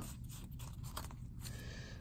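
Faint rustle and slide of stiff cardboard trading cards being fanned and sorted by hand, over a low steady room hum.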